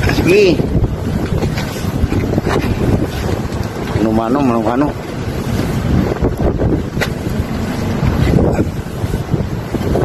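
Wind buffeting the phone's microphone over a steady low rumble on a ship's deck, with a short call just after the start and a drawn-out, wavering shout about four seconds in.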